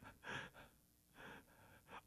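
Near silence with two short, faint breaths from a man close to the microphone, one near the start and one about a second later.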